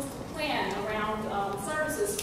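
A woman speaking at length through a microphone, continuous talk with no other sound standing out.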